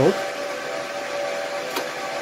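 Cooling fans of Huawei rack server equipment running steadily: a rushing hiss with a whine of several steady tones. A single light click near the end.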